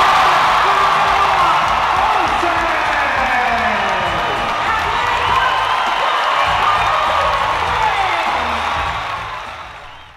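Large arena crowd cheering and shouting, mixed with background music, fading out near the end.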